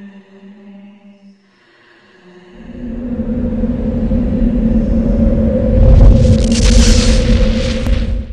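Soundtrack of an anime music video. A faint, sustained droning note fades away, then a loud low rumble swells up from about two and a half seconds in. The rumble builds a bright hiss on top near the end and cuts off abruptly.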